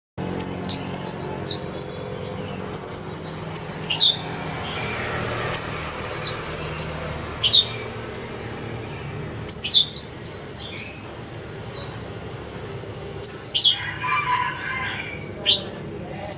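White-eye calling: quick runs of high, thin chirping notes in bursts of a second or two, repeated about six times.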